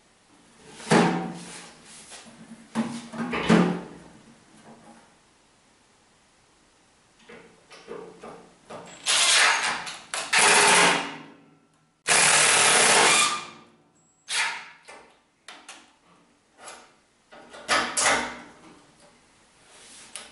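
Cordless drill-driver running in a series of separate bursts as it drives screws into equipment rack rails. The longest and loudest runs fall in the middle, with shorter bursts before and after.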